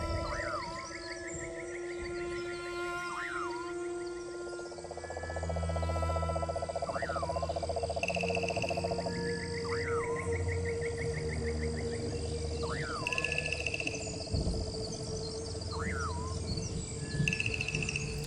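Night ambience of frogs and insects calling: pulsed trills and a short call repeating every two seconds or so, over steady high ringing tones. A low drone comes in about five seconds in.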